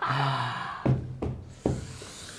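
A man laughing breathlessly without words: one long breathy out-breath, then three short gasping bursts about half a second apart.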